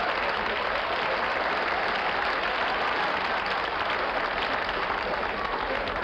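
Audience applause, steady and sustained.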